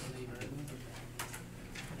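Indistinct chatter of students in a classroom, with two sharp knocks, over a steady low hum.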